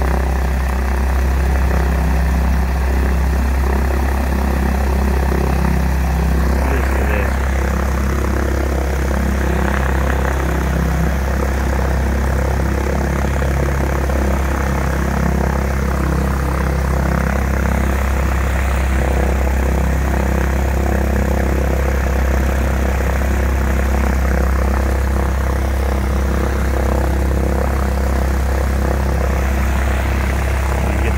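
Piper Cherokee 180's four-cylinder Lycoming engine and propeller idling steadily on the ground, a continuous low drone with no change in speed.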